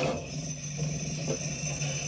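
Electric guitar music stops abruptly right at the start, leaving a steady low hum with hiss and one faint knock about halfway through.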